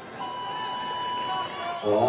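Competition start buzzer sounding one steady electronic tone for just over a second, signalling the start of a timed workout heat.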